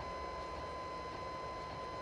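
Creality Ender 2 3D printer running while it prints the first layer: a steady even whirr with a thin, constant high tone.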